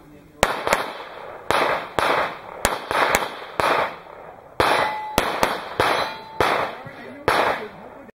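Handgun fired about a dozen times at an uneven pace, some shots in quick pairs, each shot sharp with a brief echo.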